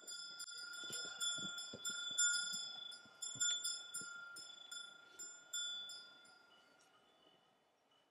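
Small metal chimes ringing in a light, irregular patter of strikes at a few fixed pitches, with a few soft low knocks among them, thinning out and dying away about seven seconds in.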